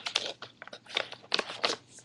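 A clear-tape-covered wallet handled and moved close to the microphone, giving a run of short, irregular crackles.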